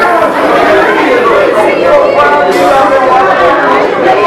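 Many voices of a church congregation sounding together at once, overlapping so that no single voice stands out.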